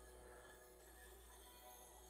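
Near silence: faint steady low hum of room tone.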